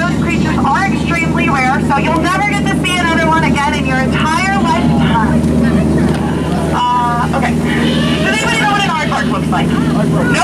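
Voices talking over the steady low hum of the tour boat's motor.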